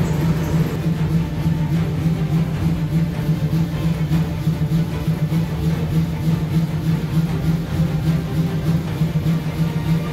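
Large vintage stationary engine running steadily, with a constant low hum and a regular pulsing beat.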